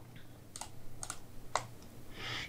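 Three sharp clicks from a computer's input controls, about half a second apart, over a faint low hum.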